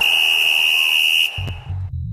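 Radio station ident jingle: a steady high electronic tone with a hiss over it for about a second and a half, then a low bass line of music starting.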